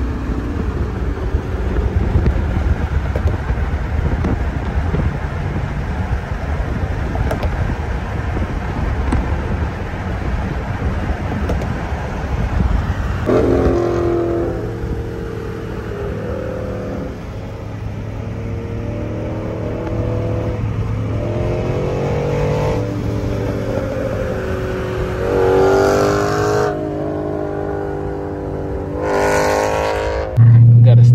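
Wind and road noise from a car at highway speed, with a black Dodge Challenger's engine running alongside. From about halfway the engine note steps up and down in pitch.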